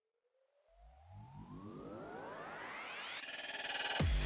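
Synthesized riser from an electronic music track: a tone sweeping steadily upward in pitch and growing louder over about three seconds, joined by a low rumble about a second in, building toward a beat drop.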